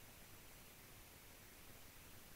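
Near silence: a faint, steady hiss of recording noise.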